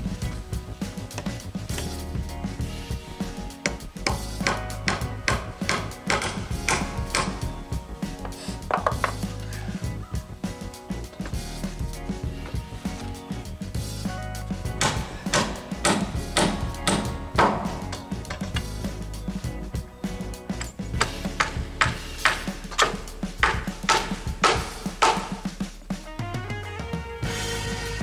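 Hammer blows on wood, coming in runs of quick, evenly spaced strikes, over background music.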